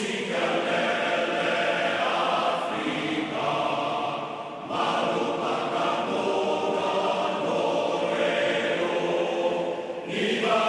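A choir singing in long held chords, with a short break between phrases about halfway through.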